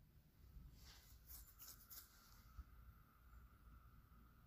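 Near silence, with a few faint scrapes of a steel spoon stirring thick pastry cream in a steel pan, and a faint steady whine from about a second in.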